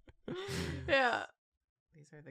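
A person's breathy vocal outburst lasting about a second, its pitch sliding down near the end, as a round of laughter dies down.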